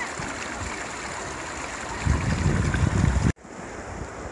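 Steady rush of a fast-flowing river, with a louder low rumble for about a second near the middle. The sound then drops off abruptly.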